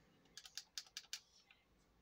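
Faint computer mouse clicks: a quick run of about seven clicks lasting under a second, then one fainter click.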